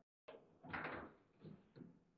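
Foosball table in play: the ball, the plastic players and the rods knocking and clattering in a cluster of sharp knocks, the loudest about three-quarters of a second in and smaller ones near the end.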